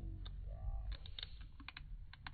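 Short sharp clicks and taps of metal fishing pliers working a hook out of a tripletail's mouth, a cluster about a second in and a couple more near the end, over a low steady rumble.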